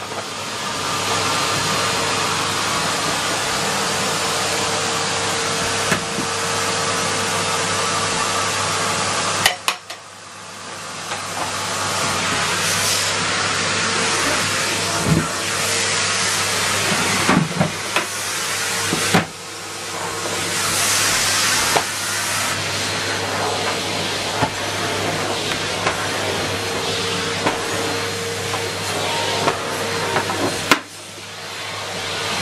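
Numatic tub vacuum cleaner running steadily. Just before a third of the way in it cuts out with a click, then starts again and its motor spins up over a few seconds.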